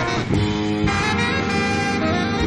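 Tenor saxophone playing long held notes, moving to a new note about a second in, over guitar and drums in an instrumental jazz-funk tune.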